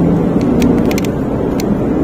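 Cabin sound of a 2018 Honda Brio 1.2 automatic under way: a steady low engine drone mixed with road and tyre noise, with a few faint clicks.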